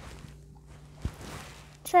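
Plastic toy kitchen pieces being handled: faint rustling, with one light knock about a second in.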